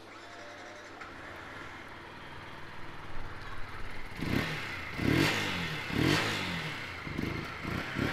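A Yamaha MT125's 125 cc single-cylinder four-stroke engine, heard through its stock silencer, idles from about a second in. From about halfway it is revved four times in quick blips, each rising and falling back to idle.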